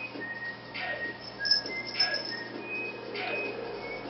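Background music: a whistled melody of short notes over a regular beat.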